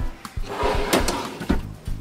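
A wooden cabinet drawer being handled, with two sharp knocks about a second and a second and a half in, over background music.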